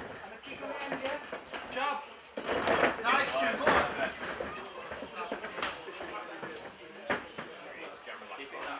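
Indistinct shouting from cornermen and spectators around an MMA cage, with a few sharp thuds of strikes landing, loudest about three to four seconds in.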